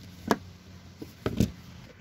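A few short metallic clicks and knocks of chrome swivel sockets being handled on a socket rail. There is one about a third of a second in, a fainter one near the middle, and two or three close together about a second and a half in.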